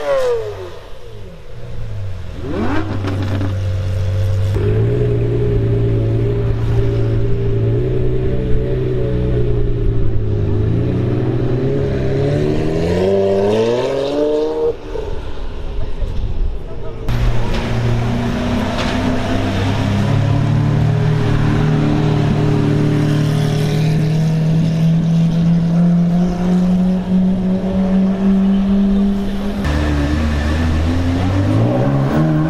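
Supercar engines: a Lamborghini Murciélago's V12 idles with one rev that rises and falls. After a sudden change about halfway, another car's engine holds a steady note that climbs slowly in pitch as it pulls away.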